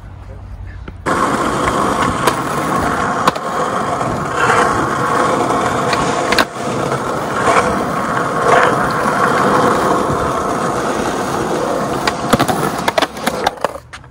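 Skateboard wheels rolling over asphalt close to the microphone: a steady rumble broken by several sharp clicks. It starts suddenly about a second in and dies away near the end.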